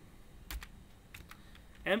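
Computer keyboard keystrokes: a few separate clicks of typing, the sharpest about half a second in.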